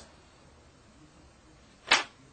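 Faint room tone in a pause between a man's spoken phrases, broken once near the end by a brief, sharp noise.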